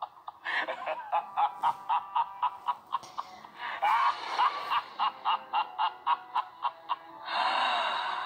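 A person laughing in quick, rhythmic bursts of about three to four a second with breathy gasps between them, ending in a longer breathy exhale.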